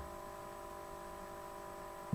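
A faint, steady electrical hum made of a few constant tones over low background hiss: the room tone of a home recording.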